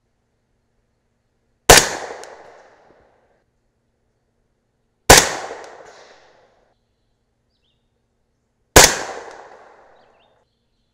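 Three suppressed shots from a 300 AAC Blackout AR-type rifle with a SilencerCo Omega suppressor, firing 220-grain subsonic rounds about three and a half seconds apart. Each is a sharp report that dies away over about a second. None goes supersonic, so there is no bullet crack.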